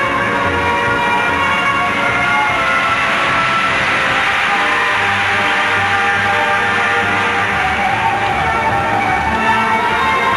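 Instrumental music for a figure skating pairs program, with long held notes over a steady low pulse.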